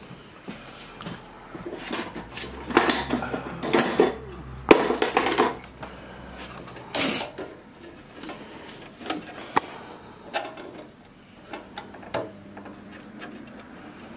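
Needle-nose pliers and metal spade connectors clicking and scraping as tight-fitting wires are worked off a heat press control board. The sounds come as irregular clicks and rustles, busiest in the first half, with a sharp click about five seconds in.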